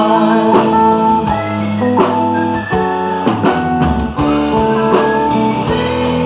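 Live band playing: electric guitar lines over bass guitar and drum kit, with a few sliding guitar notes and steady drum hits.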